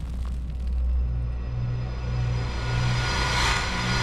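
Deep rumble under a low, pulsing drone, swelling into a bright whoosh near the end: the sound design of an animated logo sting.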